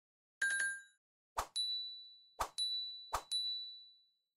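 Subscribe-animation sound effects: a short chime, then three clicks, each followed by a bright bell-like ding that rings for about half a second and fades.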